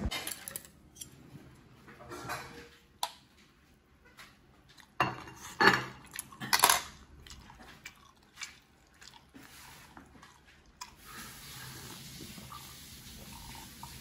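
Scattered clinks and knocks of tableware on a table: a drinking glass, a glass beer bottle and chopsticks being handled and set down, the loudest knocks about five to seven seconds in.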